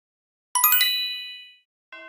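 A bright, high chime rings out about half a second in and dies away within about a second. Just before the end a lower, bell-like tone starts and holds.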